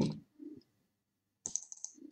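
A few quiet clicks on a computer keyboard: one at the start and another about a second and a half in.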